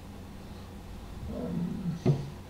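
A low, wordless vocal sound from a man, a grunt or hum lasting under a second, starting about halfway in, over a steady electrical hum.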